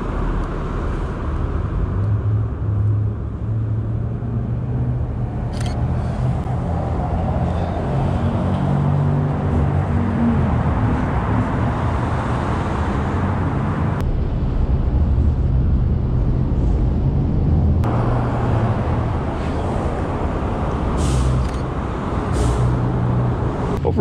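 Road traffic in an underpass: cars passing on the road, a continuous low rumble of engines and tyres. A few brief sharp clicks break through, about a quarter of the way in and twice near the end.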